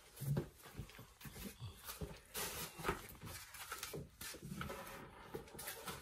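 Faint, scattered handling noise: light knocks and rustles of things being moved about, with slightly louder bumps near the start and about two seconds in.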